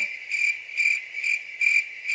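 Crickets chirping: one high, even chirp repeating a little over twice a second.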